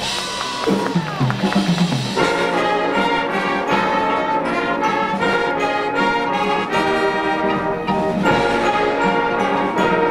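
High school marching band playing its field show: the brass sustain full chords, with a steady pulse of percussion hits coming in about two seconds in.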